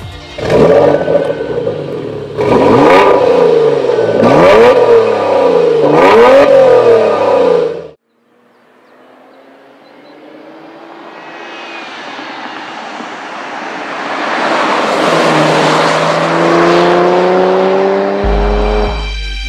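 Porsche Macan engine revving, rising and falling about four times, then cutting off suddenly. After a short silence the Macan approaches on the road: its engine and tyre noise grows steadily louder, with a rising engine tone near the end.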